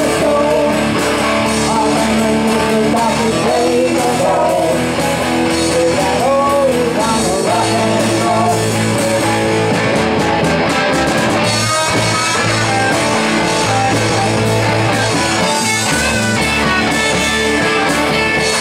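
Live rock band playing an instrumental stretch: an electric guitar lead with bending notes over steady bass and drums.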